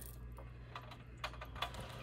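Faint, irregular clicks of a deck of oracle cards being handled, about half a dozen over two seconds.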